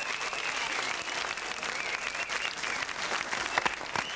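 Audience applauding: many hands clapping at a steady level.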